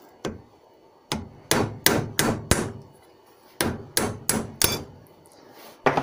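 Copper-faced hammer striking a steel socket to press a 1 mm steel blank down into the hole of a die held in a vice. About ten sharp metallic blows, mostly in two quick runs of four, with a single blow near the start and another near the end.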